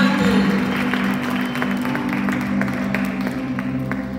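Live church band music with held low chords, with scattered handclaps from the congregation over it.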